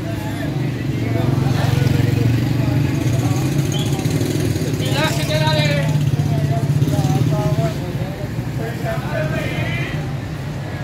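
Street noise: a vehicle engine running steadily close by, dying away near the end, with indistinct voices of passers-by.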